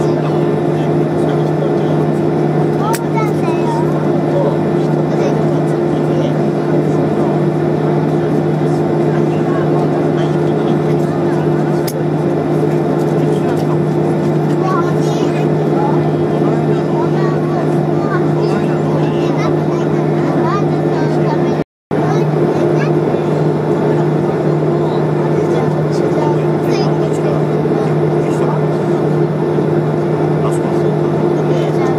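Airliner cabin noise as the aircraft moves on the ground: a loud, steady drone of engines and cabin air with two steady low hums. The sound drops out completely for a moment about two-thirds of the way through.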